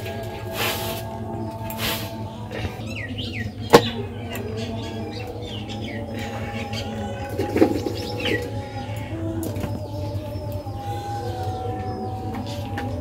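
Birds chirping in short curved calls a few times over a low steady hum, with one sharp knock about four seconds in.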